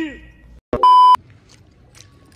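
A single short, loud electronic beep at one steady pitch, a censor-style bleep sound effect lasting about a third of a second, coming about a second in just after a man's voice trails off.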